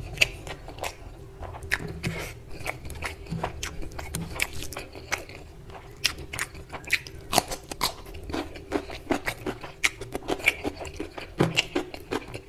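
Close-miked chewing and mouth sounds of someone eating mutton curry and rice by hand: a rapid run of wet clicks and smacks, coming thicker in the second half.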